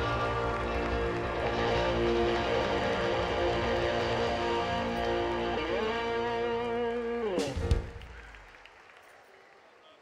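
Live band with electric guitar holding a closing chord, the pitch sliding up and then back down near the end, then a final sharp hit about seven and a half seconds in, after which the music dies away.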